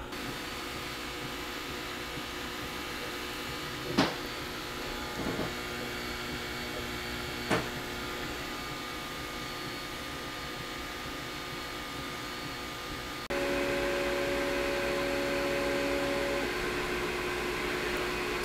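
Gluwphy 20 W laser cutter running a cut, its air-assist pump and fan giving a steady mechanical hum, with two short ticks early on. About two-thirds of the way through, the hum gets louder and changes to a different set of steady tones.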